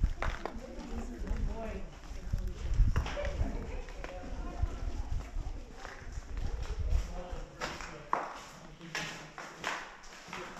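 Indistinct voices of people talking, with footsteps and heavy low rumble on the microphone; the rumble falls away about eight seconds in as the walk moves into an enclosed room.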